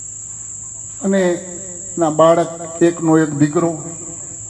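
Crickets trilling in one steady high unbroken tone. A man's voice through a microphone comes in over them about a second in, briefly, then again from about two seconds in.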